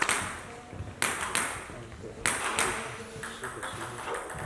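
Plastic table tennis ball bounced several times on a hard surface, each bounce a sharp click with a short high ring, mostly in pairs about a third of a second apart.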